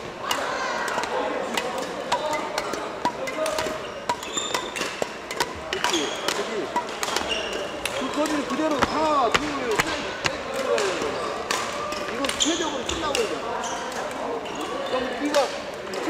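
Badminton rackets hitting shuttlecocks in sharp, irregular cracks, mixed with shoe soles squeaking on the wooden court floor of a busy hall, over background voices.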